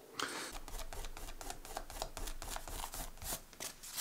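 Fingertips rubbing dried masking fluid off watercolour paper: a continuous run of small quick scratchy rubbing and crackling sounds, thinning out into a few separate scrapes near the end.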